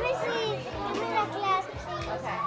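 Young children's voices talking and exclaiming over one another, with a steady low hum underneath.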